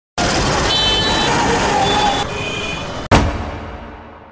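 Busy street sound of traffic and voices, shifting about two seconds in, then a single loud hit about three seconds in that rings and fades away.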